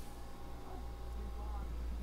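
A steady low hum with faint, thin traces of a voice above it.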